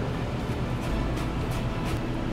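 Chef's knife chopping fresh cilantro and parsley on a plastic cutting board: a handful of short, sharp taps spaced through the moment, over a low steady hum.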